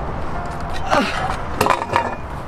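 A man's wordless shout of triumph that falls steeply in pitch about halfway through, followed near the end by a few sharp clicks and another short exclamation.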